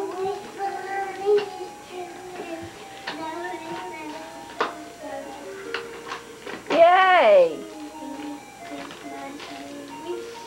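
A young girl singing over an electronic tune of steady held notes; her voice rises to one loud, high note about seven seconds in and then falls away.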